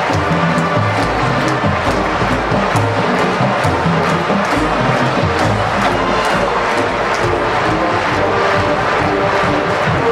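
Full marching band playing live in a stadium: brass chords over a steady drum beat.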